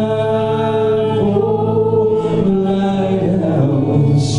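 A live church praise band playing a worship song, with singers holding long notes over electric guitar and keyboard.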